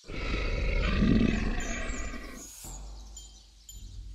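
A monster's roar sound effect that starts suddenly, is loudest for about two seconds and then fades away.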